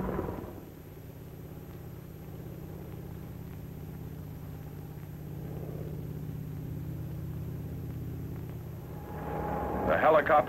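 Steady drone of a helicopter's engine and rotor, growing a little louder from about halfway through.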